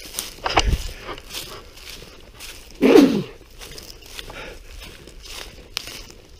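Footsteps crunching through dry leaf litter on a woodland trail, with a single loud cough about three seconds in.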